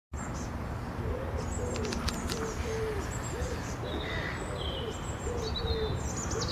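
A pigeon cooing, a steady run of short, low calls, with small birds chirping high above it over a low background rumble.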